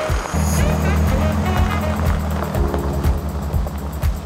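Background music with a steady beat and a bass line, with short gliding vocal-like phrases over it.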